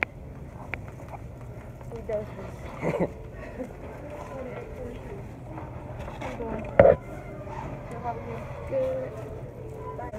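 Grocery store background: a steady low hum and indistinct voices, with a few knocks from the handheld phone being moved, the loudest one about seven seconds in.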